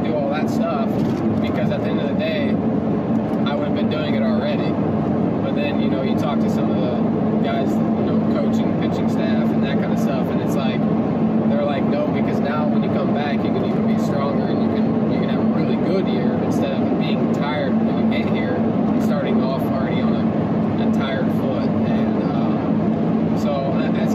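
A man talking over the steady drone of a car's engine and tyres, heard from inside the cabin while driving.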